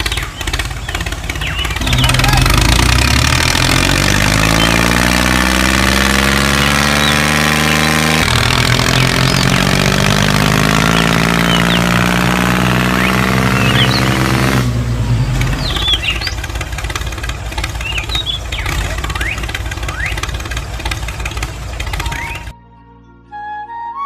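Tractor engine sound starting and running under load, its pitch climbing steadily as it revs for about twelve seconds, then going over to a rougher, noisier running with short high chirps scattered through it.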